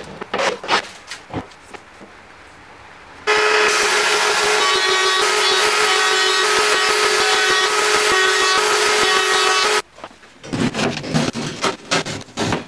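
Woodworking sounds: a few knocks and scrapes, then an electric power tool starts abruptly, runs steadily at one speed for about six seconds and cuts off, followed by irregular scraping or rubbing on wood.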